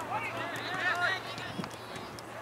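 Distant, untranscribed shouts and calls from voices across a soccer field, several short calls in the first second or so.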